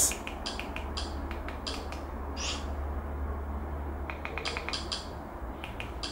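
Light clicks of a TV-box remote control's buttons being pressed as the menus are stepped through: a few single clicks, then a quick run of them about four seconds in, over a steady low hum.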